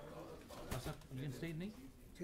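Faint, indistinct conversation among men talking quietly off-microphone.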